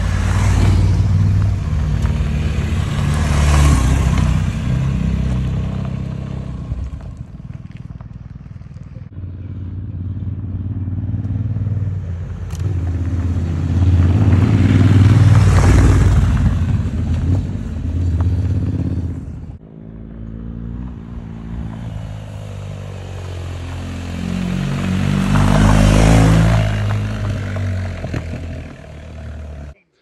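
Adventure motorcycles riding past one at a time on a gravel track, three passes. Each engine grows louder as the bike nears and drops in pitch as it moves away. The sound cuts off abruptly near the end.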